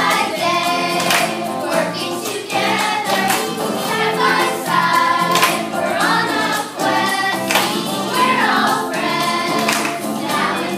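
Group of children singing a song together with instrumental accompaniment and a steady percussive beat.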